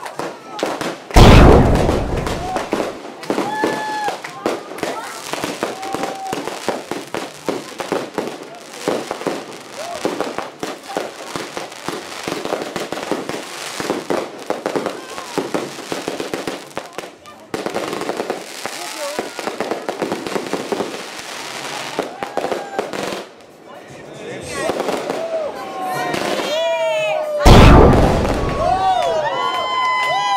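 Fireworks going off: a steady run of crackling bangs, with two loud booms, one about a second in and one near the end, and rising and falling whistles over the last few seconds.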